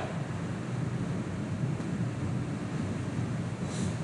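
Steady background noise of a lecture recording, an even hiss with room noise and no clear event, with a brief soft hiss near the end.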